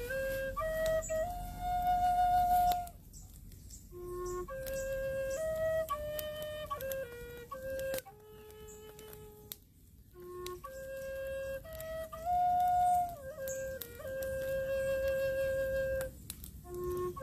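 Native American walking-stick flute of Colombian coffee wood, keyed in F# and tuned to 432 Hz, playing a slow melody of held notes in short phrases. There are breath pauses about three and nine seconds in, each followed by a dip to the low root note, and a long held note near the end.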